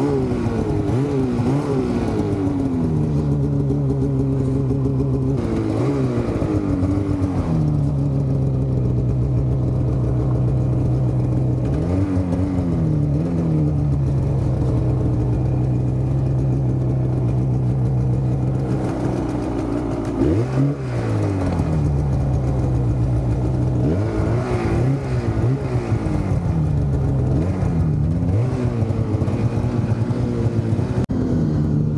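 Snowmobile engine under throttle, the revs rising and falling again and again as the throttle is worked, with longer stretches held at steady revs between the bursts.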